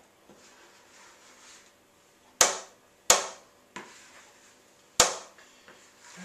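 Three sharp knocks as a plastic mixing bowl is knocked with a utensil to tap the last cake mixture out into a baking tin. The first two come close together and the third about two seconds later.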